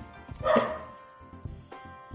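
Pet dog barking in the house, loudest about half a second in, over steady background music.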